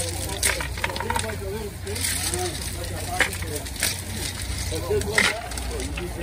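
Smooth river-pebble gravel clacking in scattered sharp clicks as hands spread it thin across a pond bed, over indistinct voices.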